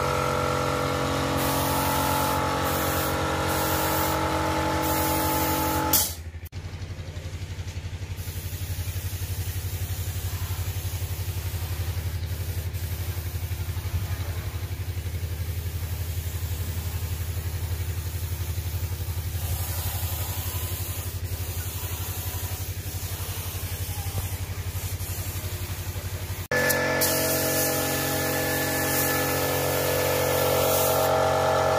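A workshop air compressor for spray finishing, running with a steady hum. The hum changes abruptly about six seconds in to a lower, plainer drone and switches back just before the end.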